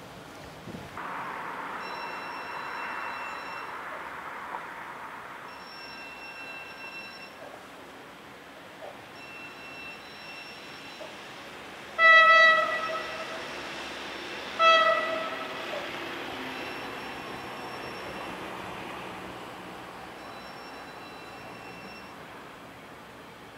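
A Stadler GTW 2/6 diesel railcar sounds its horn twice as it approaches: two short, single-pitched blasts about two and a half seconds apart, the first a little longer.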